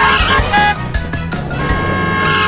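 Upbeat background music with held notes and a steady drum beat.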